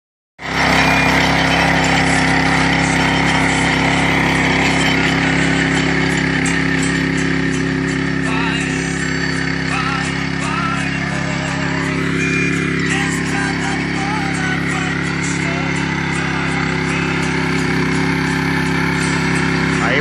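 Small petrol engine of a walk-behind rotary tiller running steadily while it tills soil.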